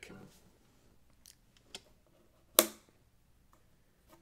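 Quiet handling noise: a few faint clicks, then one sharp tap about two and a half seconds in with a short low ring after it, as things are handled against an acoustic guitar.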